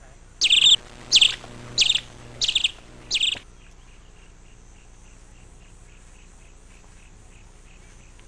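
A bird calling five times in quick succession, loud sharp calls about 0.6 s apart, then a faint, even insect chirping of about three pulses a second.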